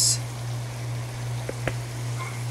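Butter sauce with shrimp and vegetables simmering in a pan, a steady soft hiss with two small pops near the end, over a steady low hum.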